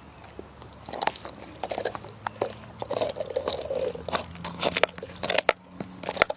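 A dog gnawing and crunching a chew bone, in irregular bites that start about a second in.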